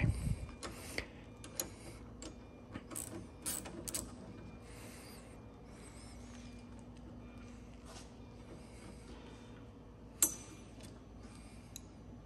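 A hand ratchet wrench clicking, with small metal tool-and-nut handling noises, as a nut on a gyroplane's rotor-mast bolt is worked. Scattered clicks and short rasps come in the first few seconds, then it goes quieter, with one sharp click about ten seconds in.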